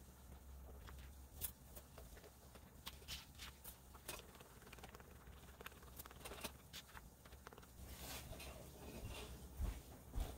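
Wooden craft stick stirring two-part epoxy resin and hardener in a plastic mixing cup: faint, irregular scrapes and taps of the stick against the cup walls. A soft knock near the end as the cup is set down on the table.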